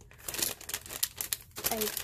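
Clear plastic cellophane sleeve around a paper pad crinkling in irregular crackles as hands turn it over and feel for the opening.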